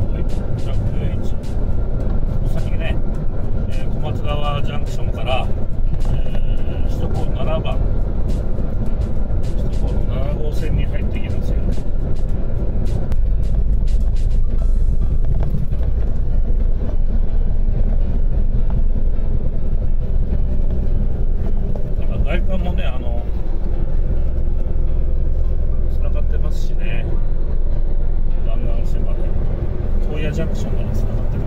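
Steady low drone of a tractor-trailer's engine and tyres at expressway speed, with music and a voice laid over it at times.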